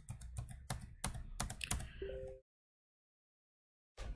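Typing on a computer keyboard: a quick run of key clicks that stops about two and a half seconds in, with a short electronic beep just before the end of the typing.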